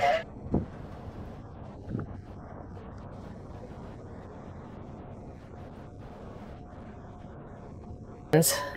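Wind buffeting the microphone on an open deck: a steady low rumbling rush, with two brief knocks near the start and a faint steady hum joining in near the end.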